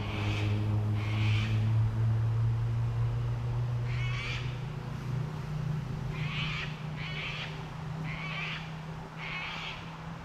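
A bird gives about seven short calls, spaced a second or so apart, over a low steady engine hum whose pitch slowly rises.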